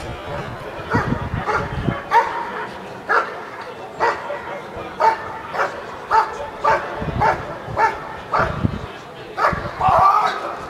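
German Shepherd barking steadily at a helper holding a bite sleeve, about two sharp barks a second: the guarding bark of a protection-sport dog.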